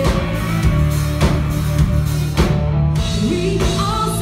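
A live rock band playing: drum kit keeping a steady beat under electric guitar and bass guitar, with a female singer's voice in the mix.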